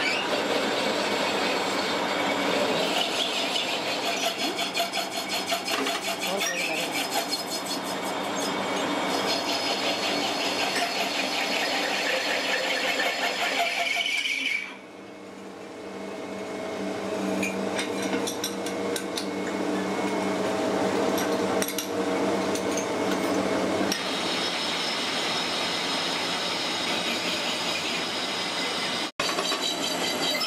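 Metal lathe turning a part: the cutting tool scraping and squealing against the spinning workpiece over the belt-driven machine's running. About halfway the cutting noise stops abruptly, then the sound builds back up over a few seconds.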